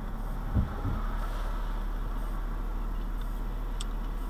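Steady low hum of a car idling at a standstill, heard from inside the cabin, with a couple of dull thumps about half a second in and a faint click near the end.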